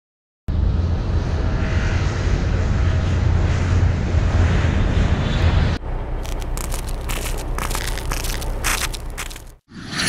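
Battle sound effects for a WWII animation: a heavy, dense engine rumble starts half a second in. About six seconds in it changes abruptly to a lower rumble peppered with irregular sharp cracks like scattered gunfire, and cuts out briefly just before the end.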